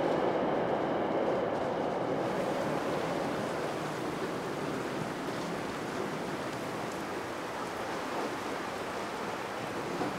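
Steady rushing noise of a flowing river. It is duller for the first couple of seconds, then becomes an even hiss that reaches higher.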